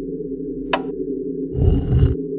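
Ambient film soundtrack: a steady low drone, a single sharp click about three quarters of a second in, and a loud, deep whoosh near the end.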